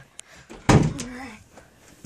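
A single loud thump about two-thirds of a second in, like a door or a piece of furniture being knocked, followed at once by a brief vocal sound, with a couple of light clicks around it.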